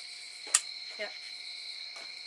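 Crickets chirring in a steady night-time chorus, with one sharp click about half a second in and a brief snatch of a voice about a second in.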